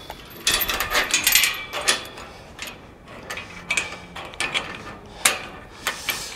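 Steel chain rattling and clinking against a tubular steel field gate as it is wrapped round the gate and post and fastened: a run of jangles and metal knocks, busiest in the first two seconds, with one sharp clank near the end.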